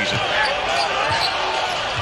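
A basketball being dribbled on a hardwood court, its bounces heard under the steady sound of an arena crowd and a commentator's voice.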